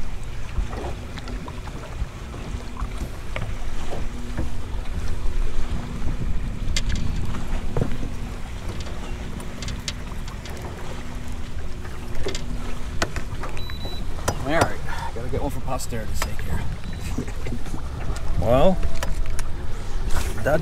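Low, steady rumble of wind and water around a small fishing boat, with a steady hum that stops about two-thirds of the way through. Light clicks and handling sounds are scattered throughout.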